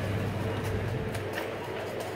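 Supermarket background sound: a steady low hum with faint distant voices and a few light knocks.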